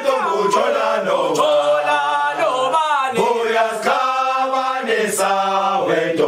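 Background music: a choir of voices chanting a cappella in long held notes, the chord shifting every second or two.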